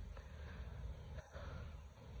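Quiet outdoor background with a steady low rumble on the microphone.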